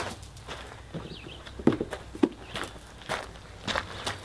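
Footsteps on gravel, a person walking at an even pace with a crunch about every third of a second, two of them louder about halfway through.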